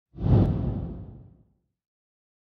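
Intro whoosh sound effect with a deep boom, swelling in fast and fading away over about a second and a half, for an animated logo reveal.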